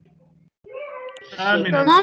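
A student's voice answering over a video-call line, starting about half a second in after a faint steady hum, its pitch gliding up and down.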